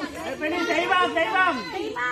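Chatter of several people's voices talking over one another.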